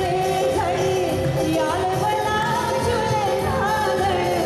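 A woman singing a song into a handheld microphone, her voice gliding between notes, over instrumental accompaniment with steady held tones.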